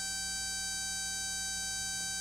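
Modular synthesizer playing a ramp (sawtooth) wave: one steady, buzzy tone held at a single pitch.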